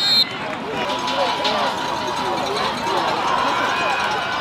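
A referee's whistle blown shrilly and ending a quarter second in, then the noise of a football stadium: many voices of the crowd and players shouting and calling over one another.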